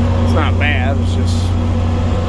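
Tractor's diesel engine running at a steady low drone under the load of pulling a field sprayer, heard from inside the cab. A brief bit of speech about half a second in.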